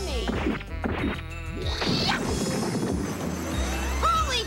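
Cartoon sound effects of a character smashing out of a hardened ink shell: falling swoops and a fast warbling zap, a sharp rising whine about two seconds in, and crashing hits, over a low music bed.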